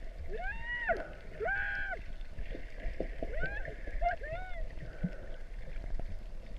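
Pitched calls heard underwater: about six short calls in a row, each rising and falling in an arch, over a steady low rumble of water.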